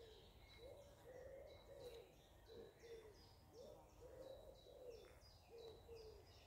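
Faint birdsong in near silence: a low cooing call repeated in short phrases of two or three notes, with a small bird's quick, high, repeated chirps over it.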